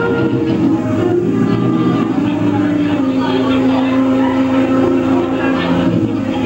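Live jazz band playing, with sustained chords over bass and drums, a long held note in the second half. The sound is rough and dulled, as off an old VHS-C camcorder tape.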